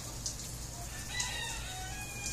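A rooster crowing once, a long drawn-out call starting about a second in.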